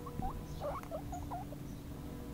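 A four-week-old long-haired guinea pig pup squeaking loudly, a quick run of short squeaks in the first second and a half.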